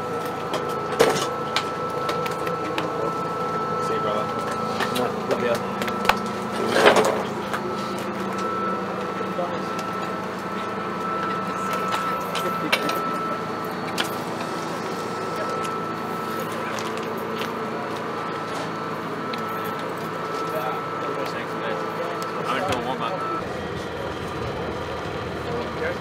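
Indistinct voices of people talking in the background, under a steady thin whine that stops near the end.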